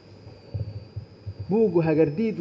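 A man pausing in an interview into a handheld microphone: faint low thumps during the pause, then his speech resumes about one and a half seconds in.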